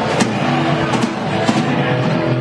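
Rock band playing live: electric guitars and bass held over drums, with a few sharp drum hits standing out.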